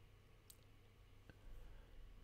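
Near silence with low room hum and two faint computer-mouse clicks, under a second apart.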